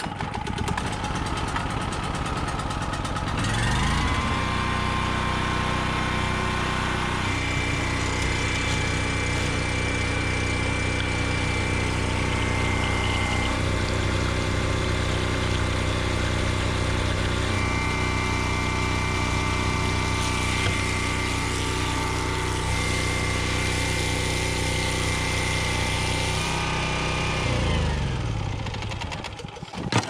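Champion 4750/3800 portable generator engine running steadily under load. About four seconds in a higher motor hum winds up as the well pump comes on, and it winds back down near the end as the pump shuts off, with water gushing into a plastic jug in between.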